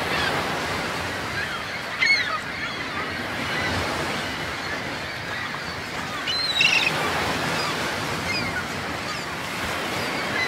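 Ocean waves sound effect: steady surf wash, with a few short bird calls rising out of it, loudest about two seconds in and again near seven seconds.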